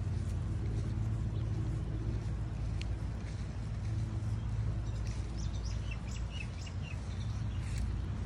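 Outdoor ambience: a steady low rumble, with a short run of small bird chirps about five to seven seconds in.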